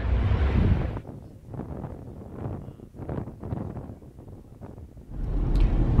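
Street noise with wind on the microphone, falling away after about a second to a quieter gusting hiss; near the end a steady low rumble of a car driving, heard from inside the cabin.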